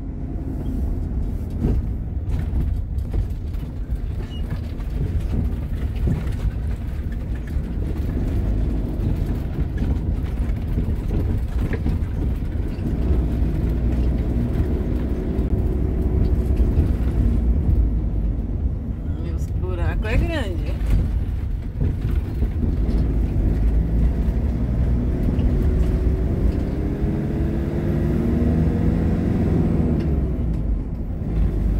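Motorhome on the move over a rough, patched country road: steady low rumble of the engine and tyres heard from inside the cab. The engine note rises as it picks up speed about halfway through, and again near the end.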